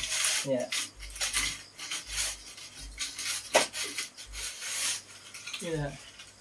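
Metal triangular straightedge scraping across wet cement render on a wall, a series of rasping strokes that shave off the excess plaster to level the surface.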